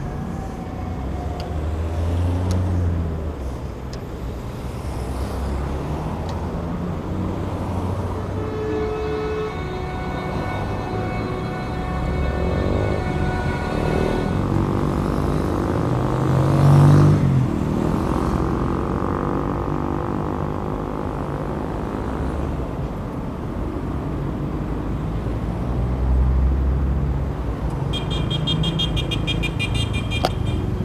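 Slow city traffic: car engines running and passing at low speed. A long car horn sounds in the middle, and a pulsing high-pitched beep comes near the end.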